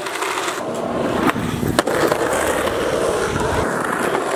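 Skateboard wheels rolling over rough asphalt: a steady rolling noise, broken by a few sharp clicks.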